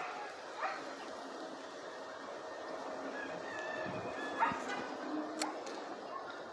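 A dog barking and yipping faintly over steady outdoor background noise.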